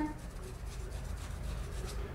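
Faint rubbing of a paintbrush on damp cotton fabric, over a low steady room hum.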